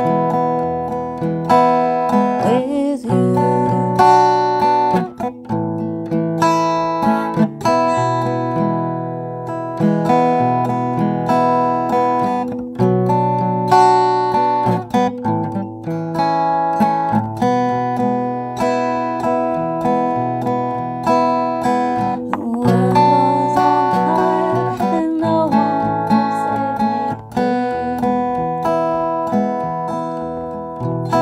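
Acoustic guitar fingerpicked with fingerpicks, one note after another ringing out in a continuous picked pattern.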